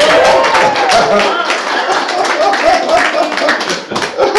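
A small group of people clapping by hand throughout, irregular and dense. Over the claps a voice holds a wavering, sliding line in a minor-key, quarter-tone style.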